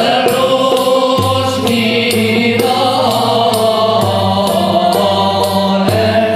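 Moroccan Andalusian music: men's voices singing together with violins played upright on the knee, oud and cello, over an even beat of sharp percussion strokes.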